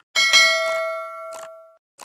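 Notification-bell sound effect: a bright metallic ding, struck twice in quick succession, that rings out and fades over about a second and a half.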